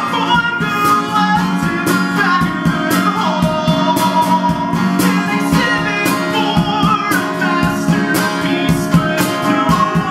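Live acoustic duo: a man singing over a strummed acoustic guitar, with a cajón struck by hand keeping a steady beat.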